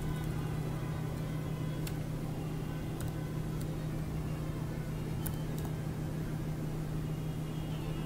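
A steady low hum throughout, with a few sharp, scattered clicks of a computer keyboard and mouse as a search term is retyped.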